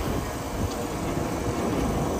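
Steady low rumble with a faint hum from a vintage electric tram standing close by.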